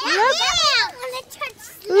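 A young child's high-pitched wordless exclamation that rises and then falls in pitch, lasting under a second, followed by fainter children's voices.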